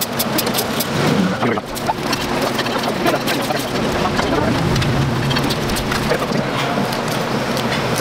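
Plastic spoon scraping and crunching through shaved ice in a plastic cup of halo-halo, a dense run of small crackles and scrapes.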